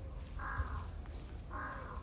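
A bird giving two short, harsh calls about a second apart.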